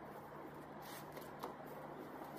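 Faint rustling and crackling of an artificial Christmas tree's plastic branches being bent and spread out by hand, with a couple of sharper crackles in the middle.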